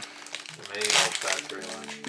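Foil wrapper of a trading-card booster pack crinkling and tearing as it is ripped open by hand, the rustle loudest about half a second to a second in.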